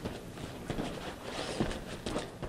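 Feet shuffling and a few soft thuds on a foam grappling mat as two men get up from a takedown and step back into stance.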